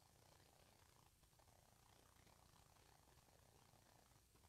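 Near silence: faint, steady low room hum.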